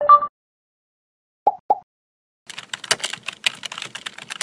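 A short electronic chime, then two quick falling blips, then fast computer-keyboard typing clicks from about two and a half seconds in: typing sound effects for an on-screen web address.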